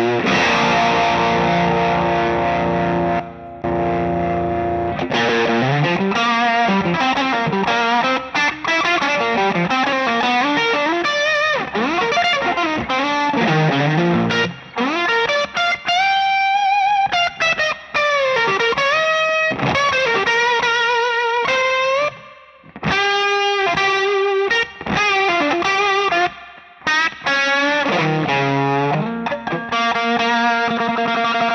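Electric Telecaster-style guitar in C standard tuning, played through a Cornerstone Gladio overdrive pedal into a tube amp. It opens with sustained overdriven chords, then moves to single-note lead lines with string bends and wide vibrato, broken by several short pauses.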